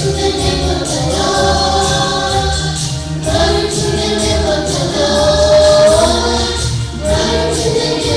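Children's choir singing a gospel song together over instrumental accompaniment with a steady percussion beat.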